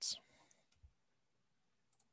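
The last sound of a spoken word, then near silence with a couple of faint clicks: a computer mouse being clicked at the desk.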